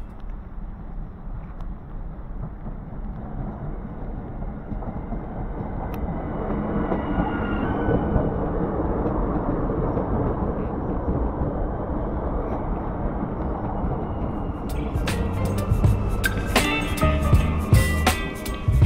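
Electric passenger train (a ZSSK multiple unit) arriving along the platform: a steady rumble that grows louder as it draws near, with a faint high whine from wheels or brakes partway through. Background music comes back in near the end.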